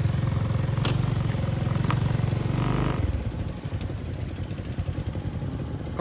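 Single-cylinder diesel engine of a Cambodian two-wheel hand tractor (koyun) running with a low pulsing drone. Its sound drops noticeably about three seconds in, with a few light clicks and rattles early on.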